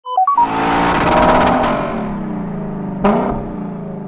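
Logo intro sting: a few quick electronic beeps, then a loud swell of layered music and sound effects with a sharp hit about three seconds in, dying away near the end.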